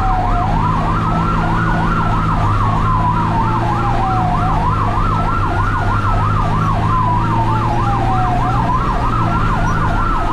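Responding ambulance's sirens sounding two patterns at once: a slow wail rising and falling about every four seconds over a fast yelp warbling about four times a second. The vehicle's engine runs steadily underneath.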